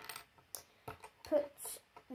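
A few faint small clicks, then a short mumbled vocal sound from a child a little after halfway.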